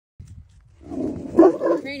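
A dog barking and growling at a coyote in a rough, harsh burst lasting about a second and loudest about halfway in. A person's voice starts calling near the end.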